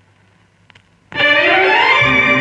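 A 45 rpm vinyl single playing on a turntable: faint surface noise with one click in the lead-in groove, then about a second in the instrumental introduction starts loudly, with a rising glide in pitch.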